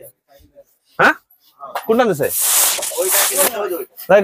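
A voice: a brief call about a second in, then talking from about two seconds in, with a breathy hiss over it.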